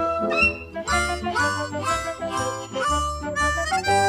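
Background music with a steady beat of about two beats a second, a melody over a bass line.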